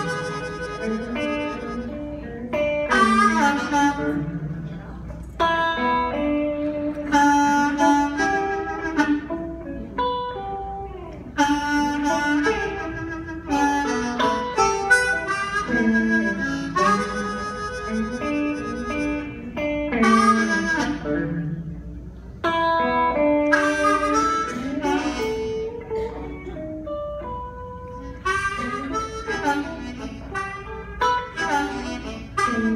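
Blues harmonica played into a cupped handheld microphone, in phrases of held and bending notes with short breaks between them.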